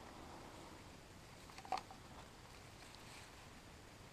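Faint rustle of plant leaves being handled, with one short crackle near the middle, over very quiet outdoor background.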